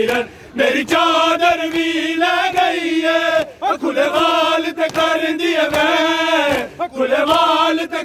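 Male voices chanting a Punjabi noha, a mourning lament, in long sung phrases broken by short pauses.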